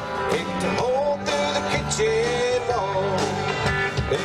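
Country song played by a band with guitars, bass and drums on a steady beat, a bending lead melody filling the gap between sung lines.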